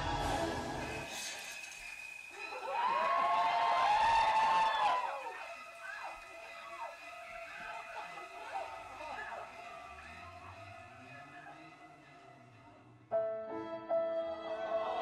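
A stage show's backing track: music fades out about a second in, then a loud voice clip rises and falls for a couple of seconds. Quieter voice traces and a low hum follow, and the music cuts back in suddenly about a second before the end.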